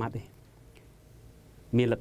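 A man speaking, breaking off for about a second and a half of quiet room tone before he resumes.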